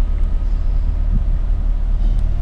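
2000 Jeep Cherokee XJ's 4.0-litre inline-six idling steadily a couple of minutes after start-up, heard from inside the cabin as an even, low rumble.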